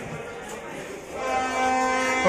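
Train locomotive horn sounding one long steady blast that starts a little over a second in, signalling that the train is about to depart.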